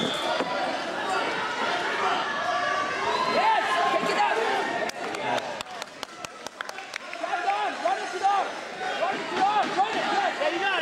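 Indistinct overlapping voices of spectators and coaches echoing in a sports hall. About five seconds in the talk dips and a quick series of sharp smacks sounds. After that, louder shouted calls rise and fall until the end.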